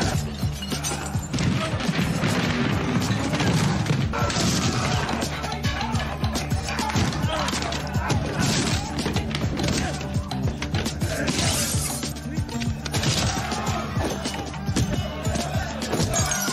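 Action-film fight soundtrack: a loud music score with steady bass under a rapid run of punch and smash impacts, with voices shouting in the mix.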